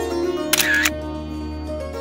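Background music with sustained notes, and about half a second in a single SLR camera shutter firing, a short sharp click-and-whir lasting about a third of a second.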